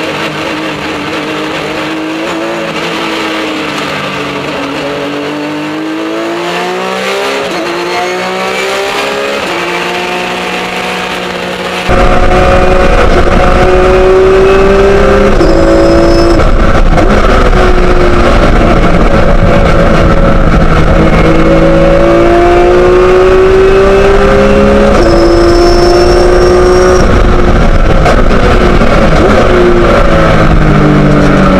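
Porsche 911 GT3 Cup race car's flat-six engine at racing speed: its pitch sweeps up under acceleration and drops with each upshift, and it falls away and climbs again through a corner. About twelve seconds in it becomes suddenly much louder, with a heavy low rumble, as heard from inside the cockpit.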